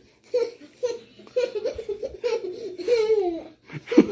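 A young child laughing in repeated short, high-pitched bursts, with a longer falling squeal of laughter about three seconds in.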